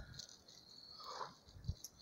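Quiet outdoor ambience with a faint, steady, high-pitched insect buzz and a soft low thump near the end.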